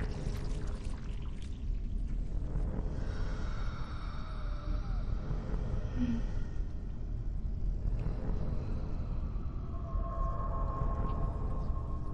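Sci-fi film sound design: a deep, steady rumbling drone with long held tones drifting over it. A cluster of higher tones swells in about three seconds in, and a single mid tone enters near the end.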